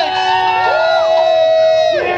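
Audience whooping: several long held 'woo' cries overlapping, the higher one starting again about halfway through, all cutting off just before the end.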